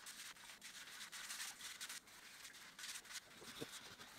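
A spoon stirring and scraping liquid glaze in a small cup: faint, rough scraping in stretches of a second or two, with a soft knock near the end.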